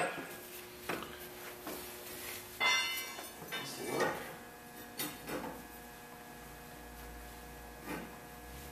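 Metal tools clinking and knocking as a socket and breaker bar are fitted onto a front axle hub nut. About two and a half seconds in comes one louder ringing metal clank.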